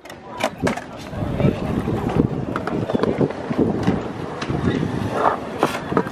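Skateboards rolling on a concrete skatepark, with scattered clacks and knocks from boards and trucks, over the chatter of onlookers.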